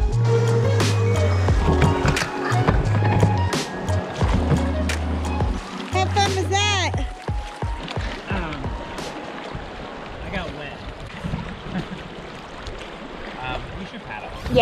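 Electronic background music with a heavy bass beat, ending about seven seconds in. After it comes the rush of choppy river water around an inflatable pontoon raft, with paddle splashes.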